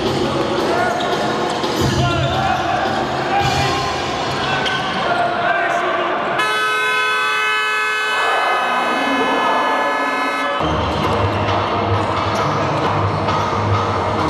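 Basketball game play on an indoor hardwood court: the ball bouncing over a noisy arena crowd. In the middle, a steady horn blast sounds for about four seconds.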